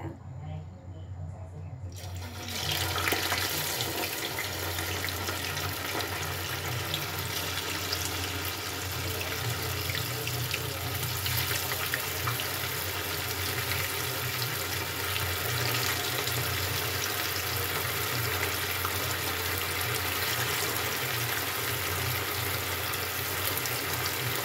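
Battered tofu pieces sizzling in hot cooking oil in a frying pan. The sizzle starts suddenly about two seconds in as the pieces go into the oil, then runs steady with fine crackling.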